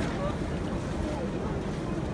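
Snow avalanche pouring down the cliffs: a steady low rumble.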